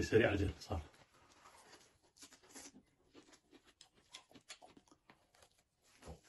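A man's voice sounds briefly at the very start. Then come quiet, irregular crackles and clicks of close-up eating: chewing, and bread being torn.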